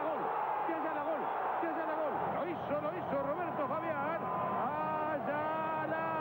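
Excited Spanish-language TV football commentary over stadium crowd noise. From about three seconds in it turns into long held cries, ending in one sustained shout: the commentator's goal cry as Argentina goes 1-0 up with a header.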